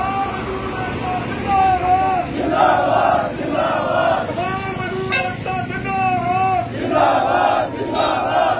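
Protesting crowd chanting slogans in call and response: one man shouts out a line and the crowd answers with a loud massed shout, about three times.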